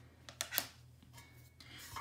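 A few light, sharp clicks and taps from hands handling hard objects on a tabletop, bunched in the first half, then faint room tone.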